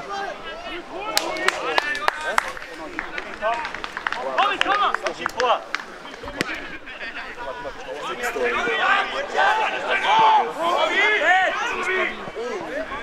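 Several voices shouting and calling to one another across a football pitch, overlapping and loudest near the end, with a few sharp knocks of the ball being kicked.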